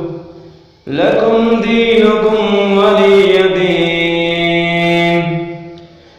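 Melodic Quranic recitation (tilawat) in the Pani Patti style: after a short pause, one long chanted phrase begins about a second in, with drawn-out held notes, and fades away near the end.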